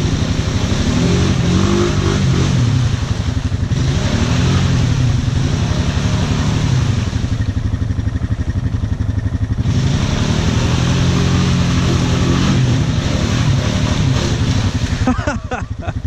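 ATV engine revving up and down in several bursts as the quad churns through a deep mud rut, over the steady low running of a second ATV close by.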